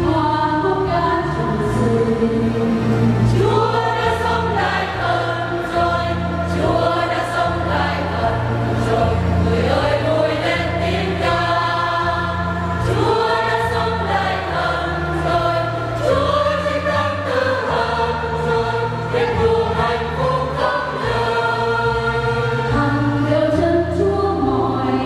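Mixed church choir singing a Vietnamese Catholic Easter hymn in several parts, with sustained low bass notes underneath.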